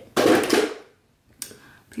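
Makeup products and tools being handled and set down: a short loud rattling clatter, then a single sharp click about a second and a half in.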